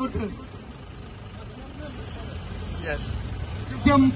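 Low, steady vehicle rumble of street traffic in a lull between loud speech, slowly growing louder, with a brief voice about three seconds in.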